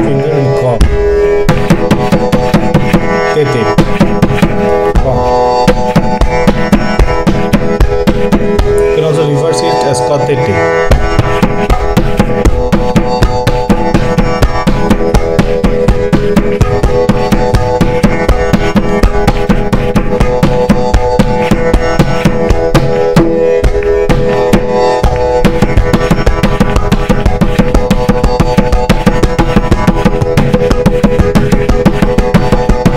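Tabla played in a steady stream of quick, even strokes. The right-hand dayan rings at its tuned pitch over deep notes from the left-hand bayan, practising the beginner bol 'te te ka'.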